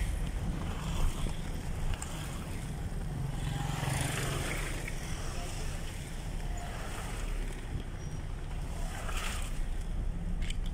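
Steady low rumble of a car driving along a street, heard from inside the vehicle, with wind noise on the microphone. There is a single bump about a second in.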